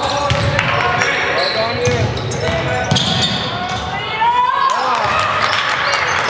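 Basketball game sounds on a hardwood court in a large hall: a ball bouncing as it is dribbled, sneakers squeaking on the floor a little past the middle, and players calling out.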